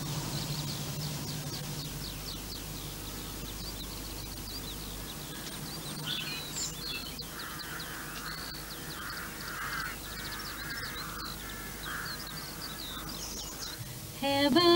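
Birds calling: small birds chirping throughout, with a run of about seven harsh crow caws from about seven seconds in to near the end.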